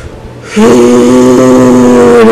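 A woman's voice holding one long, level note, starting about half a second in.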